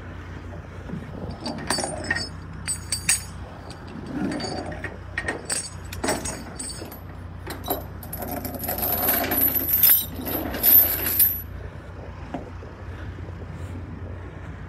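Steel tie-down chain clinking and rattling on a wooden trailer deck: scattered clinks from about a second and a half in, then a denser, louder jingling rattle that stops suddenly a little past the middle of the second half. A steady low hum runs underneath.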